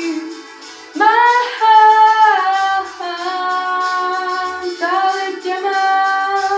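A teenage girl singing solo, holding long notes over a soft backing track. After a short dip in the first second she slides up into each new phrase, near a second in and again about five seconds in.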